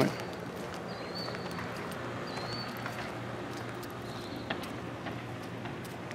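Outdoor background while walking: footsteps on grass and pavement over a steady low hum, with a couple of faint high bird chirps early on and a single sharper click later.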